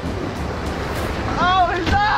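Low wind rumble on the microphone over a wash of water noise from paddling canoes, with a short vocal call about one and a half seconds in.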